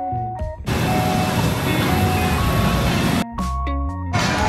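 Background music of held notes over a bass line. Less than a second in it gives way abruptly to a dense, noisy stretch with faint tones, which cuts off suddenly near the end as the notes and bass return.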